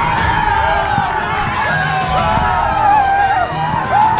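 Background music under shouting and cheering from a team celebrating a title win at the final whistle.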